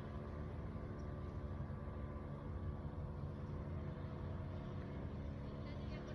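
Steady low engine rumble of a vehicle running, with an even hum and no changes in pitch or level.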